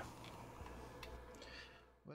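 Near silence: faint room tone with a steady low hum and a few faint ticks, dropping to dead silence near the end.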